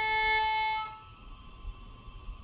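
Beginner's violin: one bowed, held note that stops about a second in. The string rings on faintly into a short pause.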